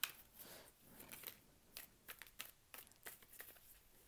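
Tarot cards being shuffled and handled by hand, heard as a scatter of quiet flicks and taps.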